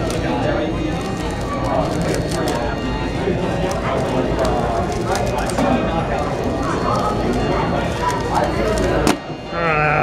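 Many people talking in a large hall, over the quick clicking of a 3x3 speed cube being turned by hand. About nine seconds in there is one sharp tap as the hands come down on the timer pads.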